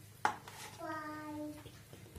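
A single sharp clink of a utensil against the steel pan, then a short held vocal tone of a bit under a second, like a child's voice.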